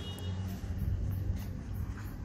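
A low, steady rumble with a faint hum in it, like a motor running somewhere.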